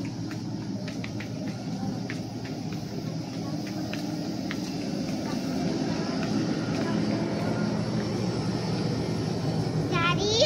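Steady low hum and rumble of room noise in a large store, growing slightly louder over the stretch, with faint scattered ticks.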